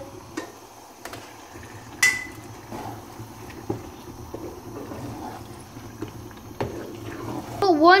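Raw chicken mince tipped from a steel colander into a non-stick pot, then stirred in with a wooden spoon: soft scraping and a few knocks. There is one sharp, briefly ringing metal clink about two seconds in.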